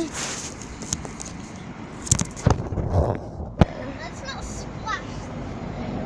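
Handling noise on the camera's microphone as the camera is moved about and set down on a mesh surface: rustling, with a few sharp knocks and bumps in the middle. Faint voices come through near the end.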